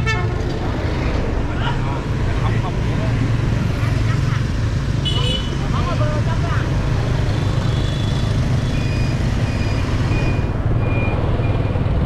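Motorbike engine running steadily at low speed along a busy street, with surrounding traffic noise and snatches of passers-by's voices. A string of short high tones sounds in the second half.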